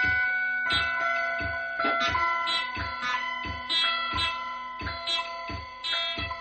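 Free-improvised live music: sustained, ringing guitar notes over a steady low thump about two and a half times a second.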